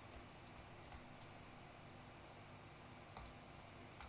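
A few faint, sparse clicks of a stylus tapping on a tablet screen during handwriting, over a faint steady hum; otherwise near silence.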